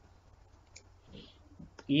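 Two faint, sharp computer mouse clicks about a second apart, as the shared screen is switched from a document to a whiteboard, over a low steady hum.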